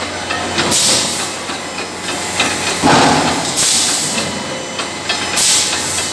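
Short hissing bursts about every two seconds at a 630-ton electric screw forging press, over a steady low hum.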